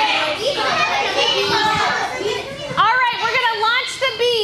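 Group of young children chattering and calling out over one another in a classroom, with a burst of high-pitched, rising-and-falling voices near the end.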